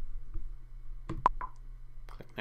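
A brief cluster of two or three sharp clicks a little over a second in, the middle one the loudest.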